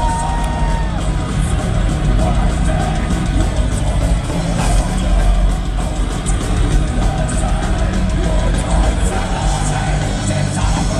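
Symphonic metal band playing live at full volume: distorted electric guitars and drums with heavy bass. The full band comes in sharply right at the start, heard from among the crowd.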